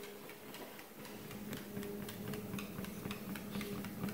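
Motorised dog treadmill running with a dog walking on it: a steady, faint motor hum with light, irregular ticking of the dog's steps on the moving belt.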